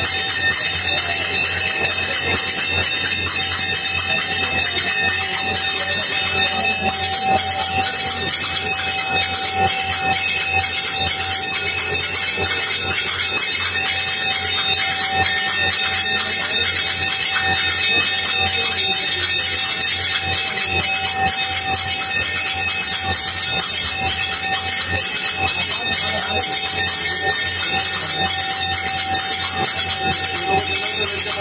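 Aarti accompaniment of temple bells and hand cymbals, clanging in a fast, unbroken rhythm with a steady ringing tone.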